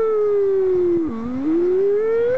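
A person's voice holding one long wordless sliding note. It sinks slowly, dips sharply about a second in, then climbs steadily, like a siren.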